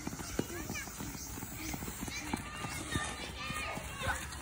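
Small children running and dribbling a soccer ball on a grass field: irregular thuds of footsteps and ball touches, the loudest about half a second in and about three seconds in, with children's voices calling out in the background.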